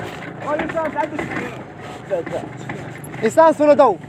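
Voices calling out without clear words, loudest in a short burst near the end, over a steady low hum.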